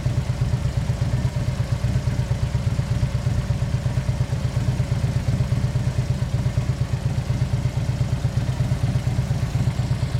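A 2012 Harley-Davidson Dyna Switchback's Twin Cam 103 V-twin idling steadily with a fast, even pulsing beat.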